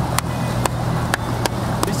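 Bass boat's outboard motor running steadily at low speed, a low even hum, with sharp knocks about twice a second over it.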